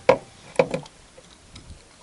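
Two short clicks of metal against the wires of a grill basket, about half a second apart, as the meat pieces inside are shifted.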